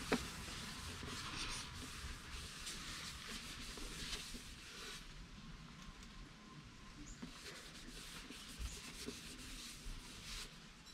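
Paper shop towel wet with brake cleaner being rubbed over a motorcycle engine case cover: faint, uneven rubbing and scuffing.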